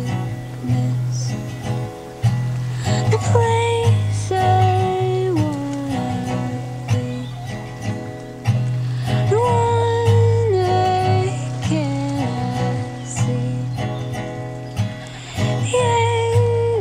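Steel-string acoustic guitar played slowly, its low strings ringing under a melody of held notes that step from one pitch to the next, with a wordless voice singing along.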